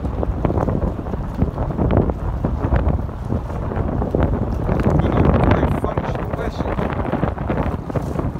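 Wind buffeting the microphone: a loud, uneven rumble that rises and falls with the gusts, heaviest about five seconds in.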